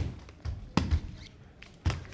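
Quad roller skates knocking on a wooden floor and exercise mat as the legs are swung out: three sharp knocks about a second apart, with softer thumps between.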